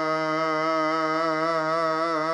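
One long sustained note of Sikh gurbani recitation (a Hukamnama verse), held with a slight waver over a steady drone.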